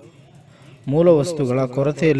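A man's voice reading aloud in Kannada, resuming after a pause of just under a second.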